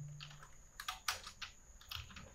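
Typing on a computer keyboard: several separate keystrokes at an irregular pace.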